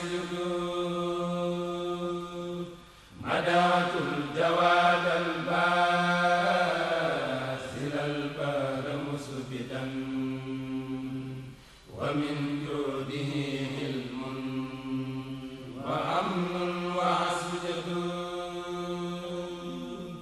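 A Senegalese Mouride kourel chanting an Arabic religious qasida in long, drawn-out held notes, with no instruments. The chant breaks off briefly about three seconds in and again near twelve seconds, then resumes.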